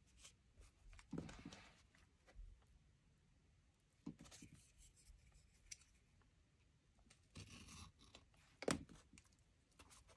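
Faint, scattered paper sounds: small scissors snipping and paper or sticker edges rustling while a stray piece of sticker is trimmed on a planner page, with the sharpest snip near the end.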